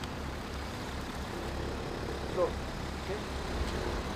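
Steady low rumble of road traffic, with a faint voice heard briefly a little past the middle.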